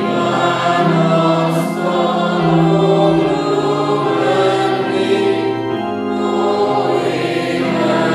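Church congregation singing a slow hymn in long held notes, accompanied by an electronic keyboard, with a woman's voice leading on a microphone.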